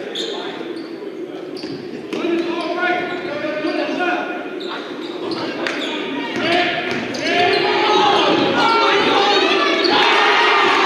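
Basketball bouncing on a hardwood gym floor, the knocks irregular and echoing in the hall, with shouted voices of players and spectators that grow louder near the end.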